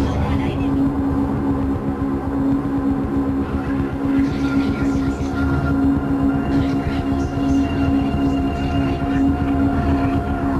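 Experimental noise track from a cassette: a dense low rumble under steady droning tones, with faint scratchy flickers of higher noise coming and going from about four seconds in.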